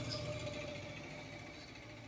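Faint background noise with a steady low hum, slowly fading.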